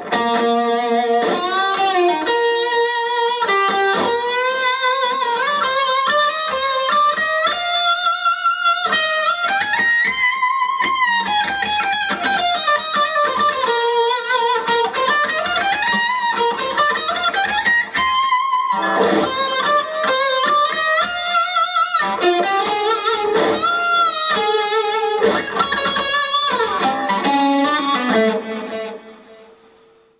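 Electric lead guitar solo on a Red Special-style guitar, played through a Line 6 Helix amp model with a slight volume boost and a short delay. The melodic lines have bends, sustained notes and quick runs, and they die away near the end.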